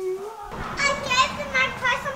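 A baby's long drawn-out vocal note ends just at the start, then from about half a second in children's high voices chatter and call out.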